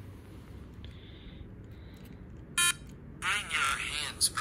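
A short electronic beep about two and a half seconds in, then a warbling, buzzy electronic tone near the end, played through the Quarky robot's small speaker as its touch pins are pressed.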